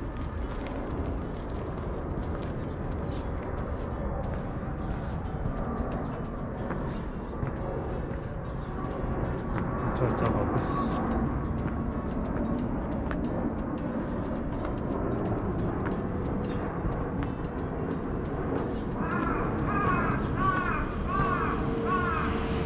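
Steady outdoor rumble of wind and distant city traffic. Near the end, birds give a run of quick, repeated chirping calls.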